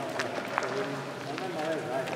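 Indistinct voices of several people talking in the background, with scattered footsteps and small clicks.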